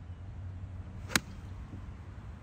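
A golf club striking a ball off the tee: one sharp, crisp click a little over a second in, over a steady low rumble.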